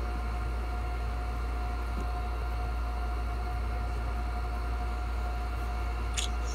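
Steady low hum with an even hiss and a faint constant high tone, unchanging throughout; no speech.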